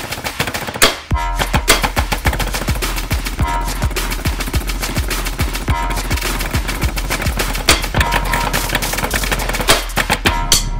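A marching snare drum and practice pads played together with sticks in a fast rudimental snare exercise: dense rapid strokes with a brief break about a second in and louder accented hits scattered through.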